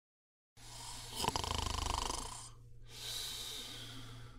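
A person snoring: two long, noisy breaths, the first louder and with a sharp click near its start, over a steady low hum.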